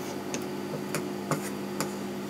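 Dressmaker's shears snipping through fabric, about four short sharp cuts roughly half a second apart, over a steady low hum.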